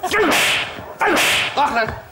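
Staged slapstick beating: loud bursts of hitting and scuffling with pained yells, repeating about once a second.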